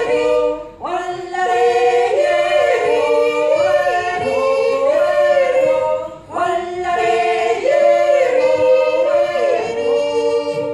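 Women's a cappella group singing a yodel in close harmony, several voices holding and stepping between notes together. The voices break off briefly twice, about a second in and about six seconds in, before the next phrase.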